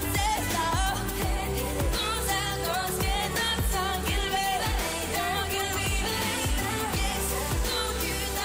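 Pop song performed with a woman's lead vocal, sung over a bass-heavy backing with a steady kick-drum beat.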